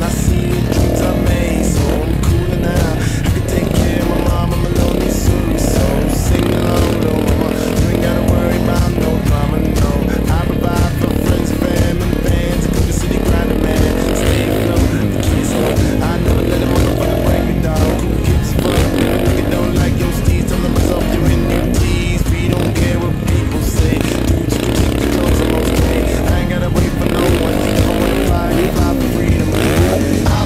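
A 2010 Yamaha YZ450F motocross bike's four-stroke single-cylinder engine revving up and down as it is ridden around a dirt track, mixed under a music soundtrack.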